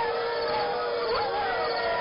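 A pack of wolves howling, several calls overlapping and gliding up and down in pitch.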